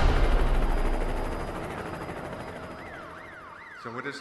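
Soundtrack of a promotional video: a loud, dense mix fades away over the first couple of seconds, and an emergency-vehicle siren sweeps quickly up and down near the end, about two sweeps a second.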